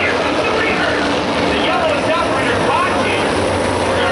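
Race car engines running at slow pace during a caution, a steady low hum, with unintelligible chatter from nearby spectators over it.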